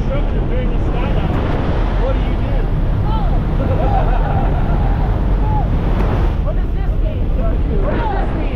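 Steady loud rush of wind and engine noise inside a small jump plane's cabin with its door open, with voices calling out faintly over it.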